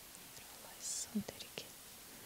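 A woman's faint whisper close to a handheld microphone just before a second in, followed by a few soft mouth clicks.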